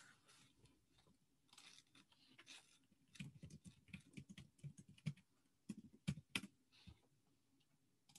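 Faint typing on a computer keyboard: a few soft clicks first, then a quick run of keystrokes from about three seconds in until near the end, as a search phrase is typed.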